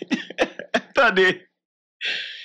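A man's voice in a few short, broken vocal sounds, stopping about a second and a half in.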